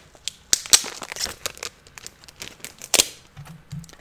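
Comic books being handled at a desk: a run of crackles and rustles, the loudest about half a second in and again near three seconds.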